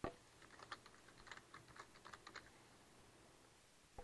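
Faint typing on a computer keyboard: one sharp key click, then a quick run of keystrokes lasting about two seconds that stops about halfway through.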